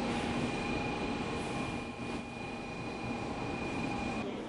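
Station platform ambience beside a Shinkansen bullet train standing at the platform: a steady noisy hum with a constant faint high whine over it.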